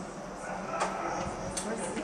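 A person talking, over a steady low hum.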